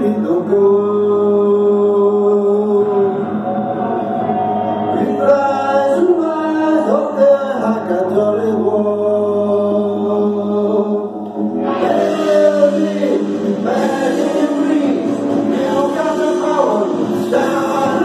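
Male voice singing long, held notes into a handheld Shure Prologue microphone over a rock backing track, through a Peavey amplifier with no effects. About twelve seconds in, the accompaniment becomes fuller and brighter.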